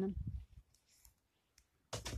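The last syllable of a spoken word, then a quiet pause broken by faint clicks and low rumbles. A sharper click with a low thump comes near the end.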